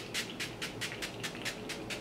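Makeup setting spray misted onto the face in a quick run of short hissing spritzes from its pump bottle, about six or seven a second.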